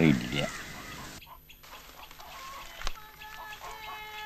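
A man's voice trails off. After that come faint, short, repeated clucking calls of chickens, with a single sharp click near the middle.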